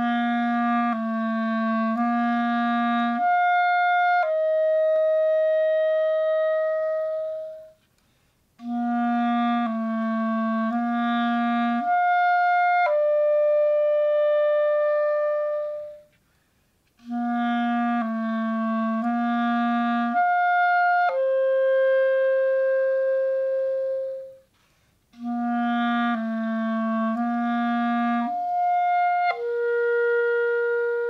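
Clarinet playing an embouchure exercise in four phrases, with a breath between each. Each phrase has a few short low notes, then leaps to a high note as it crosses into the upper register, and ends on a long held note that is a step lower in each phrase.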